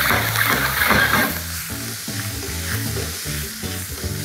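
Smashed baby potatoes sizzling in hot melted butter in a frying pan over a gas flame, the pan being shaken. Background music comes in about halfway through.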